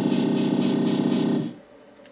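Electronic music with a fast pulsing beat, played back from music software on a computer, which cuts off abruptly about one and a half seconds in.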